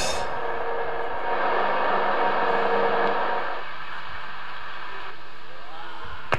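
Live rock band's cymbals and amplified guitars ringing on after a crash hit, a dense sustained wash with held tones that thins out about three and a half seconds in.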